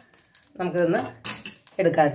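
A person speaks two short phrases, with a few light clinks of kitchenware against a pan in between.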